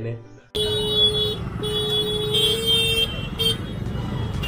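Busy street traffic of motorcycles, with vehicle horns sounding in long held blasts that stop and start again several times over the steady engine noise and crowd voices. It begins suddenly about half a second in.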